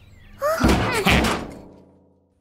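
A door slamming shut about half a second in, with a short rising cartoon voice sound over it, then fading away to near silence.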